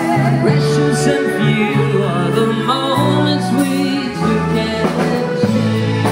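A live pop band playing a slow ballad with a lead vocal, held keyboard chords and a bass line, heard through the stage sound system.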